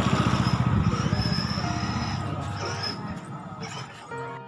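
A motorcycle-like engine running with a rapid low pulse. It is loudest near the start and fades away over the next few seconds.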